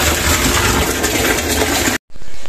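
Water from a ball-valve tap pouring into a plastic barrel, a steady splashing rush with a low rumble beneath it. It cuts off abruptly at the end.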